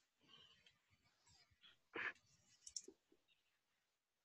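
Near silence with faint clicks: one short, sharper click about two seconds in and a few smaller ticks soon after.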